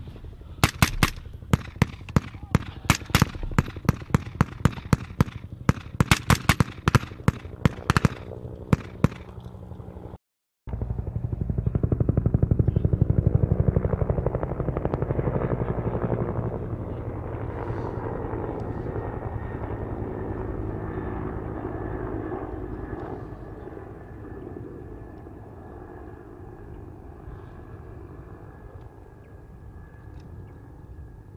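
Rifle fire from M4-type carbines: a long run of sharp shots at uneven spacing, some in quick strings, through the first ten seconds. It breaks off abruptly, and a vehicle engine then runs steadily, loudest for a few seconds before settling lower and fading slowly.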